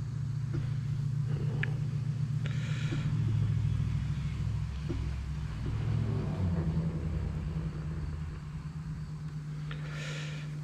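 A low, steady engine-like rumble, a motor running somewhere near, shifting slightly in pitch a couple of times, with a few faint clicks over it.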